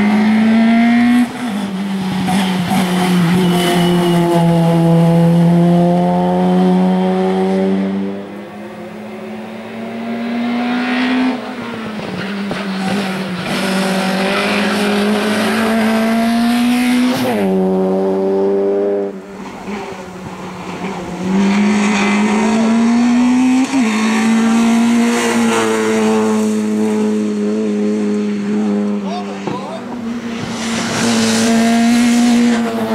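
Peugeot 106 race car's engine revving hard under full throttle. The pitch climbs and then drops sharply at each gear change, about four times.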